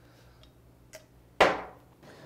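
A faint click, then a single sharp knock about one and a half seconds in that dies away within half a second, over a low steady hum.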